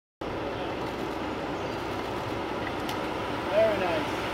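Steady outdoor background noise, a low rumble and hiss, with a voice coming in near the end.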